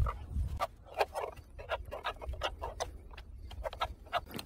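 Cut plastic bottle collar and cable tie being handled with gloved hands: a run of irregular sharp clicks and crackles over a low rumble.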